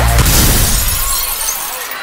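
Glass-shattering crash ending the dance track, breaking in as the beat stops and fading away over about a second and a half.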